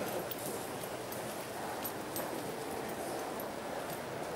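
Footsteps on a hard floor, a few faint separate steps over steady background noise.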